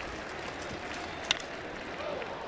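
Steady ballpark crowd background, broken once, a little over a second in, by a single sharp crack of a wooden baseball bat hitting a pitch and popping it up.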